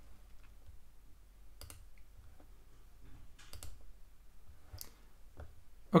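Faint, scattered clicks at a computer, about five over several seconds, over a low steady room hum.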